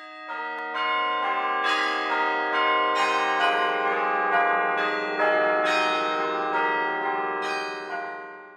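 Church bells ringing: a run of overlapping strikes, about two a second, each ringing on, dying away at the end.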